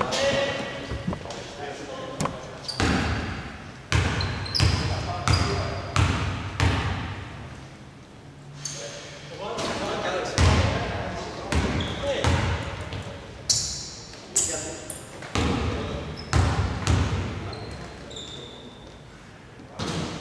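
Basketball bouncing on a hardwood court during free throws, each bounce a sharp knock echoing around a large, almost empty arena, with a few short high squeaks and indistinct players' voices between them.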